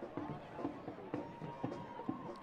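Stadium crowd ambience at a soccer match: a low background of scattered distant voices and shouts with a few sharp claps, as a corner kick is about to be taken.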